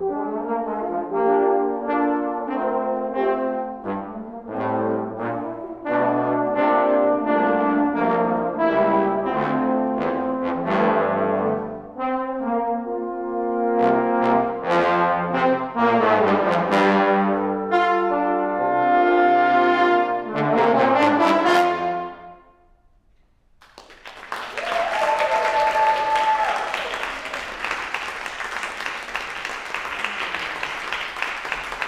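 Trombone ensemble playing held and moving chords, the piece ending about 22 seconds in. After a moment of silence the audience applauds, with one whistle from the crowd early in the applause.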